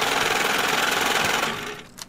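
Cartoon sound effect of an ATM dispensing cash: a rapid mechanical rattling whir of bills being fed out, lasting about a second and a half and fading out near the end.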